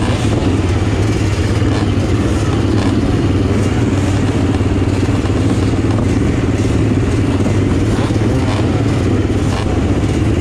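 Dirt bike engines idling steadily on a motocross starting gate, the nearest being a Honda XR600R's air-cooled single-cylinder four-stroke, with the other bikes on the line running alongside.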